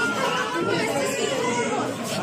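Several people talking at once in a crowded room: overlapping, indistinct chatter.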